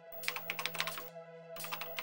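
Computer-keyboard typing clicks in two quick, irregular bursts, a typing sound effect, over a steady held chord of background music.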